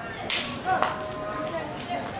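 A short, sharp hiss about a third of a second in, then a drawn-out shout from a player with a sharp click just before the one-second mark.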